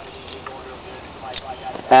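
Quiet steady background hiss with a few faint light clicks as gloved hands handle the loose spring and follower of a blown-apart rifle magazine.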